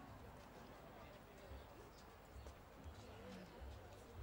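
Faint, dull hoofbeats of a show-jumping horse cantering on a sand arena, under faint distant voices.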